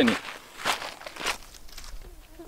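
Footsteps on a gravelly dirt track, with two clear steps about two-thirds of a second and just over a second in.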